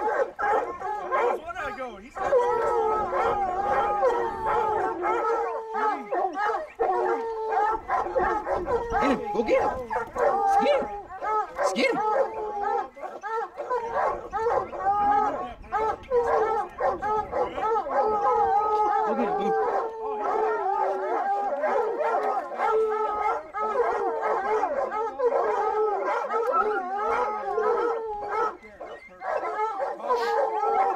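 A pack of hounds baying and howling up a tree at a treed mountain lion, many voices overlapping in one loud, unbroken chorus.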